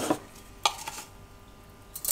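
A single sharp metal click from a round metal kitchen container being opened in the hands, over otherwise quiet room tone.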